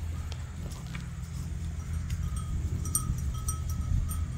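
Outdoor ambience of a grazing flock of sheep: a steady low rumble with scattered faint clicks. From about halfway through, a faint ringing tone comes and goes.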